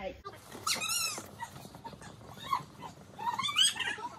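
Children's high-pitched squeals and shouts, a few short calls that rise and fall in pitch.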